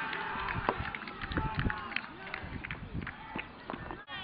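Pitch-side sound of a football match: players' voices calling out and running on the field, with many short sharp knocks scattered through.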